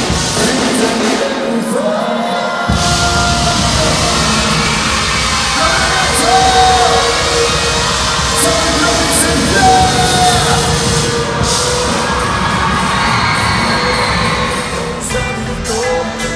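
Live band music amplified in a concert hall, with drums, bass guitar, trumpet and saxophone, and crowd noise under it. The bass and drums drop out for about two seconds near the start, then come back in.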